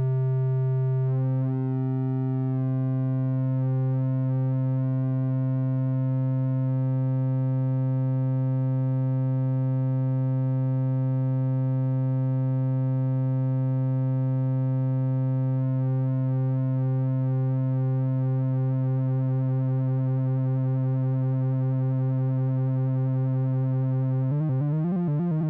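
VCV Rack software modular synthesizer holding one steady low drone with a stack of overtones. The overtone mix changes about a second in and again a few seconds later. In the second half a slow wavering pulse creeps into the upper tones.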